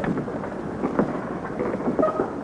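Steady hiss and crackle of an old optical film soundtrack, with a couple of short knocks about a second apart.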